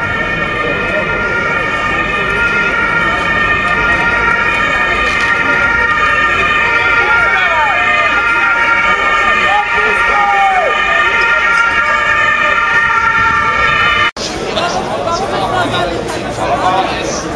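A loud, steady drone of several held tones that never change pitch, with a few short gliding sounds over it about halfway through. It cuts off sharply near the end and gives way to the chatter of a crowd.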